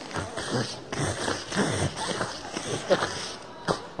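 A man's wordless voice making a run of short grunts and gulping noises while he drinks a smoothie.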